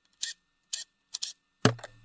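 Several small, sharp metallic clicks from hand tools and bolts being handled at the solenoids in the engine's lifter valley. Near the end comes one louder clack, followed by a low steady hum.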